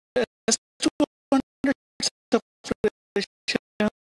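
Stuttering audio: short, sharply cut fragments of pitched sound, about three a second with silence between each, like a skipping or glitching sound feed.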